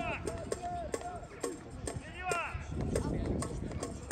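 Children's voices shouting and calling out across a football pitch, with several sharp knocks scattered through it.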